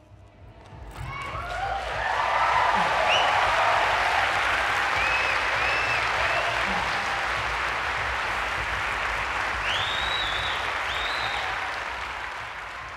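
A large audience applauding, with scattered cheers riding over the clapping. It swells up about a second in, holds steady, and fades toward the end.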